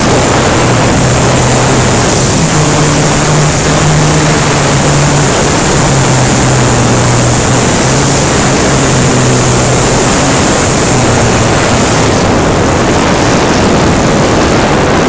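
Loud wind rush on the onboard camera of a low-flying radio-controlled model plane, with the propeller's steady low hum underneath, its pitch shifting slightly up and down.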